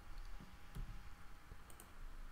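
A few faint computer mouse and keyboard clicks as a number is typed into a form field, two sharper clicks near the end.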